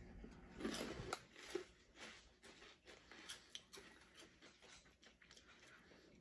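Faint crunching of Flamin' Hot Cheetos being chewed: soft, scattered crackles, a little louder about a second in.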